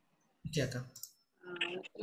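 Short snatches of speech over a video call, with a click-like noise about half a second in and dead silence in between.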